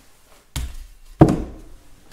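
A large steel wrench set down with two knocks, about two-thirds of a second apart, the second louder and ringing briefly.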